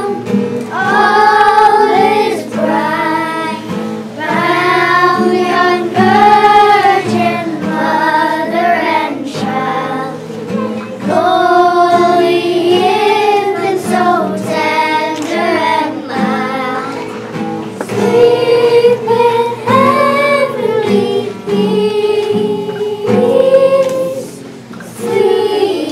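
Children's choir of young girls singing a song together, accompanied by an acoustic guitar.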